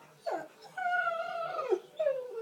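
Boxer–Rhodesian Ridgeback cross puppy whining: a short falling cry about a quarter second in, then one long whine held on one pitch that drops at its end.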